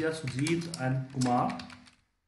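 Typing on a computer keyboard: a quick run of key clicks as a name is entered into a spreadsheet cell.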